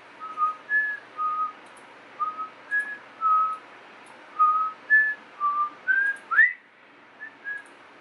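A man whistling a casual tune: about eleven short, clear notes hopping between a few pitches, ending with a quick upward slide about six seconds in, then two soft notes.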